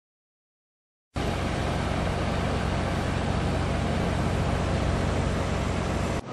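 Silence, then about a second in a steady outdoor background noise cuts in abruptly: an even low rumble with hiss above it, unchanging in level.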